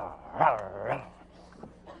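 A man's voice giving a short, growl-like groan without words, under a second long and bending down then up in pitch, near the start; then a quiet pause.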